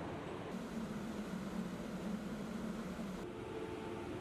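Steady machinery and ventilation hiss of a naval operations compartment, with a low hum that comes in about half a second in and drops away near the end.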